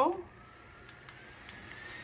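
Small fan motor of a rechargeable neck fan spinning up, a faint whine rising steadily in pitch, with a few light clicks about a second in.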